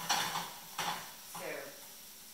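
Spatula stirring and scraping mushrooms around a frying pan of hot oil, two sharp scrapes less than a second apart over a light sizzle.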